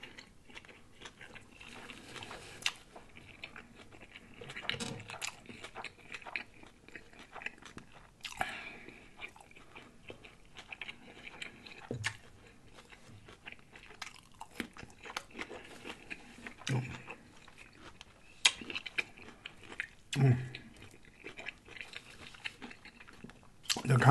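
Close-miked eating sounds: chewing and biting on a corned beef sandwich and a dill pickle spear, with wet mouth clicks and a few sharper crunches. Several short, low closed-mouth hums come through between bites.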